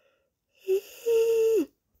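A high voice makes two wordless sung notes: a short one, then a longer held one that slides down at the end.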